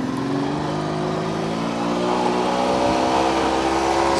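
Motorboat engine running and speeding up, its pitch rising gradually and steadily.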